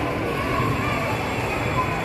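Steady indoor shopping-centre ambience: a continuous low rumbling hum with indistinct background voices.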